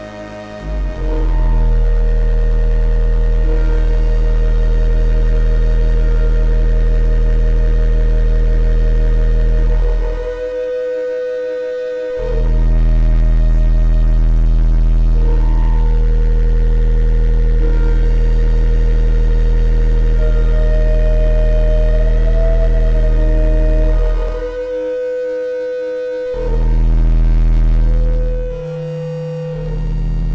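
SOMA Lyra-8 organismic synthesizer playing a loud sustained FM drone of low bass and held tones. Its voices are switched by an Ornament-8 sequencer loop: the drone drops out for a couple of seconds about ten seconds in, again later, and briefly near the end, and the chord shifts after each gap.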